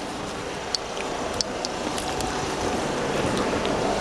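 Wind rushing over a handheld camera's microphone: a steady noise that grows slowly louder, with a few faint clicks.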